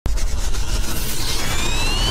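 Cinematic intro sound effect: a deep rumble under a wash of noise, with a whistling tone that starts rising after about a second.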